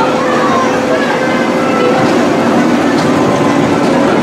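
Miniature park train running along its track: a steady, loud rolling noise from the open car, with riders' voices faintly underneath.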